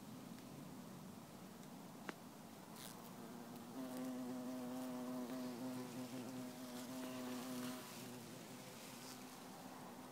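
Vestal cuckoo bumblebee (Bombus vestalis) buzzing in flight, a steady hum that grows louder about four seconds in and drops back near eight seconds. A single sharp click about two seconds in.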